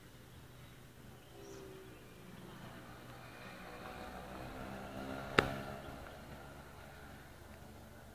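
A motor vehicle passing by, its engine sound swelling to a peak about five seconds in and then fading, with a single sharp click at the peak.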